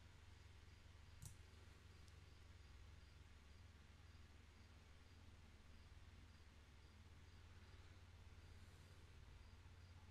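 Near silence: room tone with a low steady hum, and a single computer mouse click about a second in, followed by a fainter tick.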